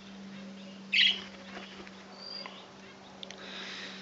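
A single short, loud bird chirp about a second in, followed a little after two seconds by a brief thin high whistle, over a steady low hum.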